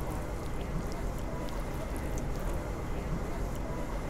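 Steady background noise of a small eatery, with a few faint light clicks scattered through it.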